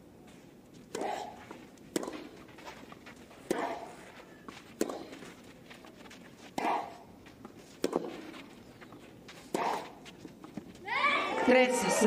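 A clay-court tennis rally: about seven sharp racket strikes on the ball, roughly one every second and a half, several with a player's grunt. Near the end the crowd bursts into cheers and shouts as the point ends.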